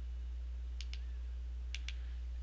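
Two quick pairs of small button clicks, about a second apart, from the buttons used to step through an on-screen menu, over a steady low electrical hum.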